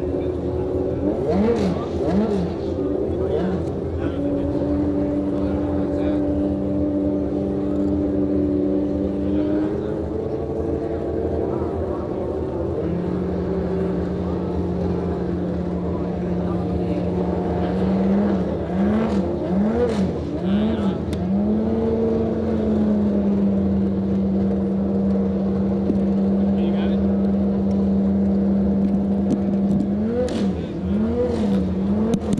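Several race car engines idling on the starting grid, their idle notes shifting now and then. Quick throttle blips come twice in the first few seconds and as a run of four or five about two-thirds of the way through.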